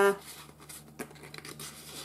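A small paper tag being slid into a paper journal pocket: faint scraping and rustling of card against card, with a few light clicks.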